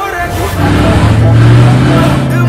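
Car engine running, loud and steady in pitch, swelling in about half a second in and fading toward the end as the music drops away.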